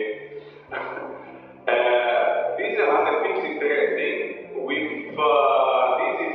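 A person's voice, with a faint steady low hum underneath.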